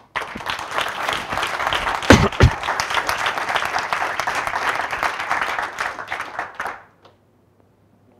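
Audience applauding, a dense patter of many hands clapping that dies away about seven seconds in. Two low thumps stand out a little after two seconds in.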